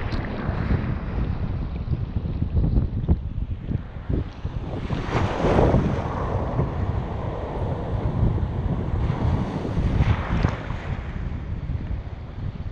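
Small ocean waves breaking and washing around a microphone held at water level, with wind buffeting the microphone in low rumbles. A louder rush of breaking whitewater comes about five seconds in, and another near ten seconds.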